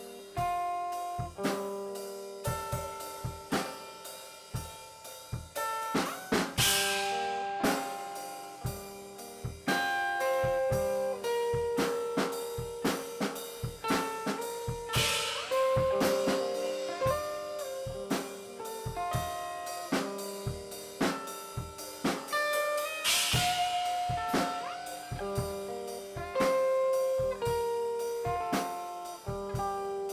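Improvised instrumental rock jam: a Yamaha drum kit played busily on snare and kick with a cymbal crash roughly every eight seconds, under an electric guitar playing held single notes that step between pitches.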